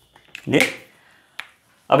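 A man's voice saying one short syllable in a small room, with two brief sharp clicks, one just before the syllable and another about a second later.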